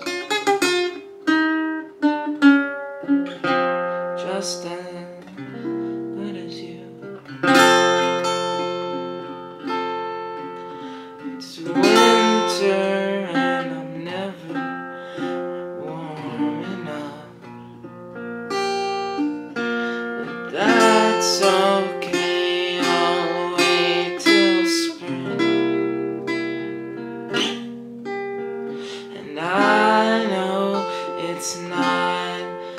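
Steel-string acoustic guitar with a capo playing a simple chord progression: full strummed chords every few seconds with picked notes ringing between them. A man sings along softly in places.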